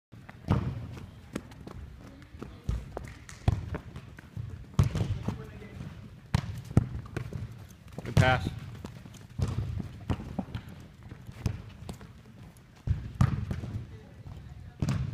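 Soccer balls being kicked and passed on indoor artificial turf: sharp thuds at irregular intervals, a dozen or more, echoing in a large hall, with players' voices calling in the background.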